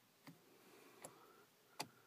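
Three faint clicks about three-quarters of a second apart: a vehicle's light switch and stalk being clicked to turn the high beams and headlights off.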